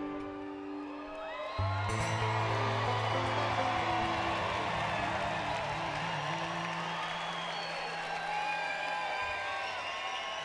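A folk band holding its closing chord, a low held note coming in about one and a half seconds in, as a large crowd starts cheering and whooping over it.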